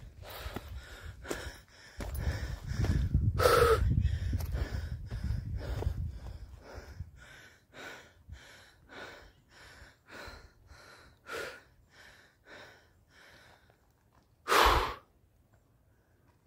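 A person breathing hard while climbing a steep trail: quick, rhythmic breaths roughly one and a half a second. A low rumble fills the first few seconds, and one louder, sharp breath comes near the end.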